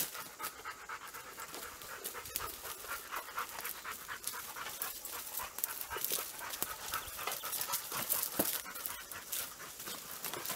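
Dogs panting quickly and steadily close by, with scattered sharp crackles.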